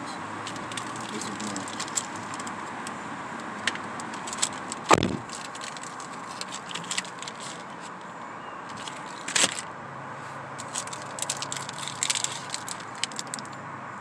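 Plastic candy-bar wrappers crinkling and rustling as they are handled, with scattered small clicks over a steady background hum. A sharp knock about five seconds in and another about nine and a half seconds in.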